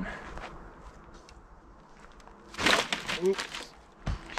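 A giant slingshot of stretched exercise bands let go about two and a half seconds in: a short, sudden rush of noise as the bands spring forward on a botched, whiffed shot. Before it, only a few faint rustles as the bands are held drawn.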